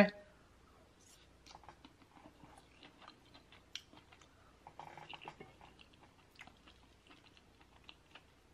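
Quiet, close-miked chewing of a soft mouthful of crab-stuffed salmon and asparagus: faint wet mouth clicks and smacks scattered through, with a brief soft closed-mouth hum about halfway through.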